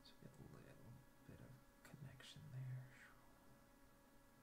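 A man's faint, low muttering under his breath, ending in a short hummed tone about two and a half seconds in.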